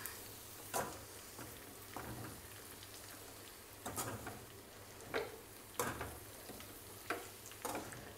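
A metal spatula scraping and knocking against a kadai as chicken, onion and capsicum are stir-fried, a stroke about every second, over a faint steady sizzle.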